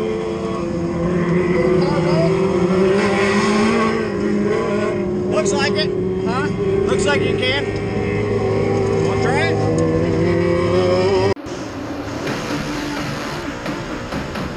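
Dirt-track mini late model race car engine idling steadily, with other race cars revving up as they pass. The engine sound cuts off suddenly about eleven seconds in, giving way to a different, quieter race-car soundtrack.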